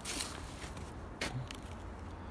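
Quiet outdoor background with faint crunching of footsteps in snow, and one sharper crunch about a second in.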